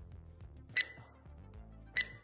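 Quiet background music in a lull, with a sharp click carrying a brief high ringing tone about every 1.2 seconds.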